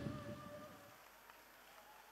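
The tail of a live band's music fading out, with a faint held note dying away within the first second, then near silence.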